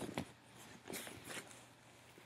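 Faint rustling of fabric as hands rummage in a cloth drawstring bag and pull a shirt out of it, with a few soft rustles around a second in.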